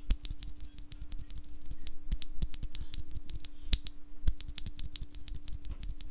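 A Novelkeys Cream linear keyboard switch with POM housing and stem, lubed with Krytox 205 grade 0 and filmed, pressed repeatedly between the fingers: a quick run of small plastic clicks, several a second.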